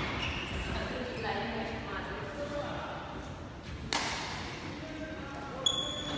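A single sharp smack of a badminton racket hitting a shuttlecock about four seconds in, ringing on in a large hall, with indistinct voices before it and a brief high squeak near the end.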